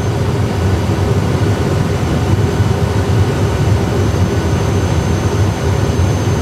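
Steady, deep rumble of an Airbus A320 full flight simulator's cockpit sound: simulated engine and airflow noise on approach with the thrust levers almost at idle.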